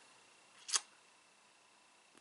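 One short, sharp click a little before the middle, in otherwise quiet room tone.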